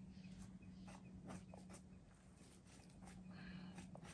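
Near silence with a faint steady low hum and a few faint, scattered clicks.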